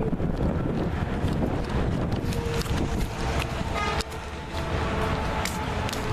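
Wind buffeting a handheld camera's microphone, a steady low rumble, with a few light knocks from the camera being handled while walking.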